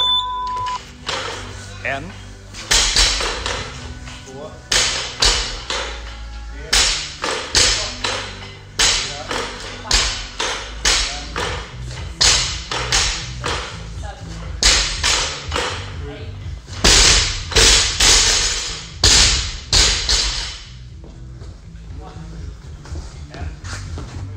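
Barbell with bumper plates being power-snatched and set back down on a rubber gym floor, a cluster of sharp thuds about every two seconds for eight or so reps. The thuds stop a few seconds before the end.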